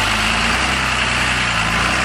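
An automatic-transmission Land Rover's engine running at steady low revs as the truck crawls slowly over slickrock, with a steady hiss above it.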